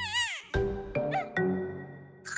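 Soft cartoon background music with steady notes and a bass line, over which a high, wavering sleepy murmur from an animated baby character sounds at the very start, then a brief rising squeak about a second in.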